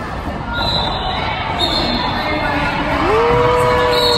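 Roller skate wheels squeaking on a wooden gym floor: several short high squeaks over the hall's crowd noise. A long held call from a voice starts about three seconds in.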